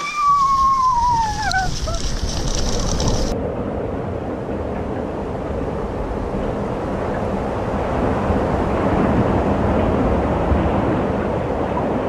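Cross-country skis running fast over packed snow while towed by two dogs, with wind rushing over the microphone, a steady loud noise that builds slightly. A high cry falling in pitch is heard in the first two seconds.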